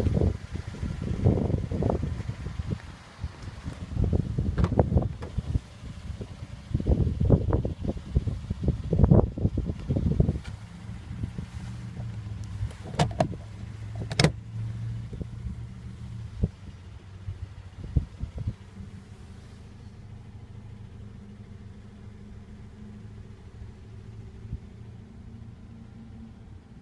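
Irregular low rumbles of wind and handling on the microphone for about ten seconds, then a steady low hum from the 2010 Toyota Yaris's 1.5-litre four-cylinder idling, heard from inside the cabin. Two sharp clicks come a little past the middle.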